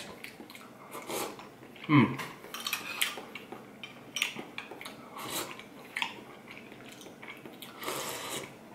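Metal spoon clinking and scraping against a small glass bowl in short, scattered taps, with mouth sounds of soup being slurped and eaten.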